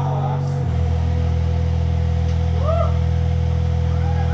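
Live band music: a held low bass note that moves to a new pitch about half a second in, under a steady higher tone, with a brief sliding vocal sound past the middle.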